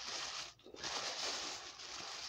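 Plastic bag crinkling and rustling as it is handled and unwrapped, with a short pause about half a second in.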